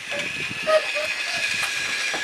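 A battery-powered Thomas TrackMaster toy engine running along plastic track pulling a wagon, its small electric motor making a steady whir.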